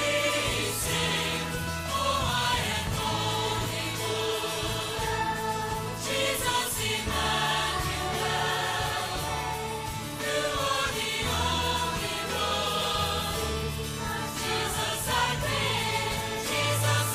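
Children's choir singing a sustained, slow-moving melody with instrumental accompaniment that holds steady bass notes underneath.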